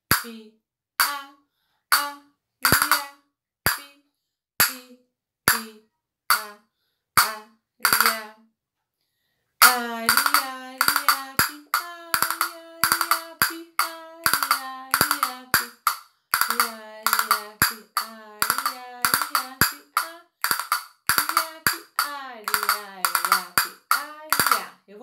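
A pair of castanets played by hand: single strikes about once a second for the first eight seconds, then, after a short pause, faster patterns of clustered strikes and quick rolls.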